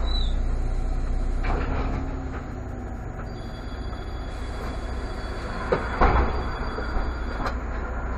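Irisbus Citelis CNG city bus standing at a stop, its natural-gas engine idling with a steady low rumble heard from inside the cab. A few sharp knocks come a little past the middle and again near the end.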